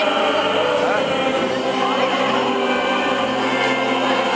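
A male singer singing into a handheld microphone over orchestral backing music.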